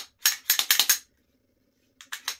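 Glock 17 pistol being worked by hand to show it empty: a quick run of sharp metallic clicks and clacks from the slide and action in the first second, then a pause.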